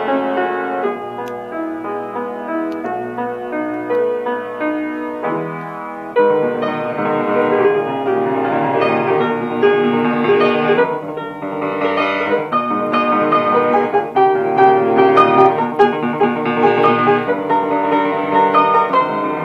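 A Kawai RX-2 5'10" grand piano being played, with a warm tone, somewhat out of tune after arriving from a private home. It starts with a softer passage, then the playing grows fuller and louder about six seconds in.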